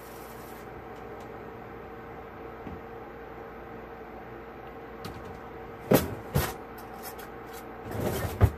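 Steady hum of food cooking on the stove, with two sharp knocks close together about six seconds in and a few lighter kitchen clicks around them.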